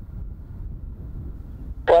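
Low, uneven rumble of a distant Embraer EMB-314 Super Tucano turboprop climbing away after takeoff, with wind buffeting the microphone.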